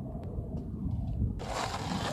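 Steady low outdoor background rumble with no distinct event; a brighter hiss comes in about three quarters of the way through.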